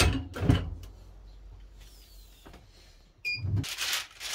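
Manual clamshell heat press being clamped shut: a heavy clunk, then a second one half a second later. Near the end the press's timer beeps briefly, the press opens with a thump, and parchment paper rustles as it is lifted off the shirt.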